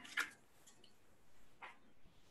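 Faint handling noises from cardboard being picked up and held: a short scrape just after the start and another near the end, over quiet room noise.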